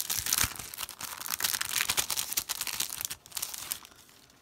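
Clear plastic packaging crinkling and rustling as sticker sheets are handled and slid out, in quick, dense rustles that stop just before the end.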